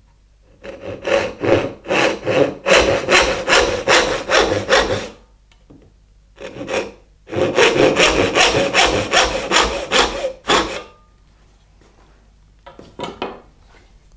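Hand backsaw cutting into a wooden board held upright in a vise: two runs of quick, even push-and-pull strokes with a short pause between them.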